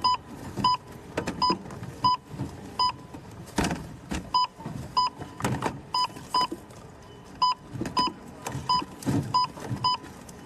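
Supermarket checkout barcode scanner beeping over and over, about fifteen short beeps at one pitch, as items are swiped across it in quick succession, with knocks and rustles from the items being handled.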